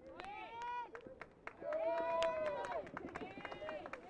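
Spectators shouting and cheering in long, high-pitched calls, the loudest held for about a second midway, with scattered claps.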